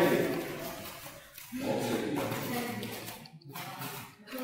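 Raised voices in a gym hall, in two stretches: one fading over the first second, another from about a second and a half in to about three seconds, with no clear words.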